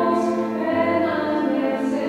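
Choir singing a slow piece with long held notes.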